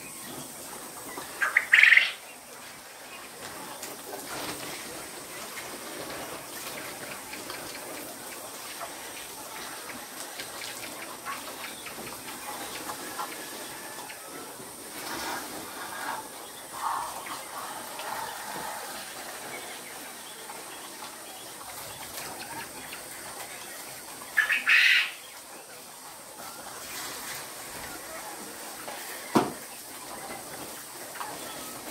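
Caged quail calling in a barn: two loud, short calls, one about two seconds in and one about 25 seconds in, over faint chirping from the flock. A single knock comes near the end.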